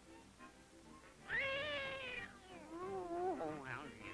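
A cartoon cat's loud, wavering yowl of fright starts about a second in, followed by a lower, sliding wail. Light background music plays underneath.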